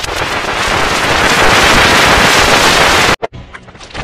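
Very loud, harsh distorted noise from heavily effected audio, swelling over the first second and cutting off suddenly a little after three seconds in, followed by a few scattered clicks.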